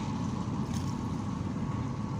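Steady low rumble of a large passenger ferry's engines, heard from the pier while the ship manoeuvres away from its berth.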